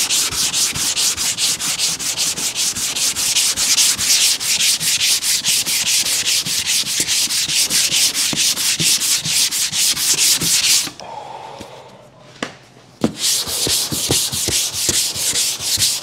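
Hand block-sanding of cured body filler on a van's side panel: sandpaper on a sanding block scraping back and forth in quick, even strokes to level the filler along the body line. The strokes stop for about two seconds near the end, with a sharp knock or two, then start again.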